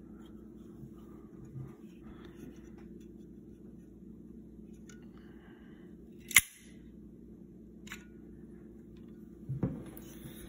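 Homemade break-action shotgun pistol being worked by hand: a few small handling ticks, then one sharp metal click about six seconds in, with a lighter click a moment later, over faint room hum.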